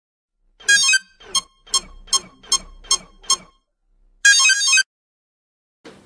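Electronic beeping sound effect with bright, many-toned beeps: a short burst, then six quick beeps about two and a half a second, then a longer burst about four seconds in, with dead silence between them.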